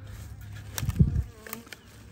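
Honey bee buzzing close past the microphone, swelling to its loudest about a second in and then fading, with a few light clicks around it.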